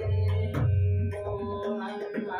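Tabla playing an Ektal accompaniment over a steady, organ-like drone. Two deep, resonant bayan (bass drum) strokes come near the start and just after half a second in, with lighter, sharper dayan strokes between them.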